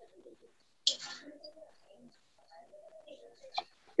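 A bird calling faintly in the background in low, wavering notes, with a short burst of noise about a second in.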